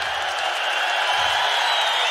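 Theatre audience applauding and laughing, a steady wash of clapping.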